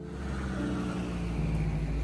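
A car's engine running and road noise, heard from inside the car, as a steady hum and hiss.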